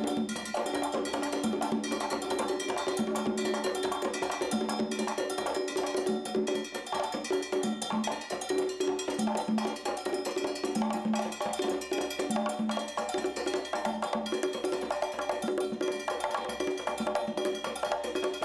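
Congas played by hand in a fast, continuous rhythmic pattern: sharp slaps and open tones, with a low drum tone recurring about every second.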